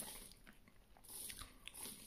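Faint close-up chewing of a mouthful of boiled dumplings, with a few soft clicks of the jaw and teeth.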